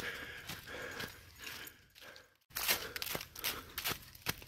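Footsteps crunching through dry fallen leaves on a woodland trail, irregular steps of a person hurrying behind a dog. The sound drops out briefly a little past halfway, then the crunching comes quicker and denser.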